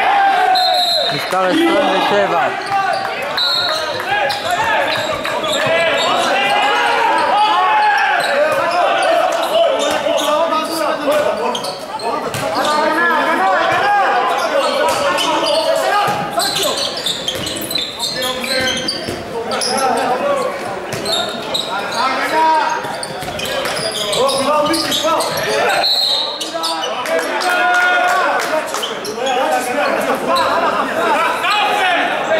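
Indoor handball play in a large echoing hall: the ball bouncing on the wooden court with scattered thuds, under ongoing shouts and calls from players and people around the court.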